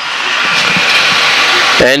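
Greyhound-track mechanical lure running along its rail toward the starting boxes: a steady rushing whir that grows louder as it comes in, just before the boxes open for the start.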